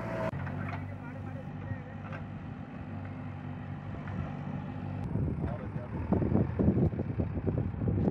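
Diesel engine of a JCB backhoe loader running steadily. About five seconds in, the sound gets louder and busier, with people's voices mixed in with the machinery.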